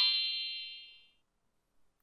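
Electronic chime sound effect from a children's learning app, the cue that a picture has just been coloured in: a stack of bright ringing tones, held and then fading out over about a second.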